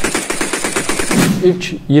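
Kalashnikov-type assault rifles fired in rapid automatic fire into the air, a fast even run of shots that stops about a second and a quarter in.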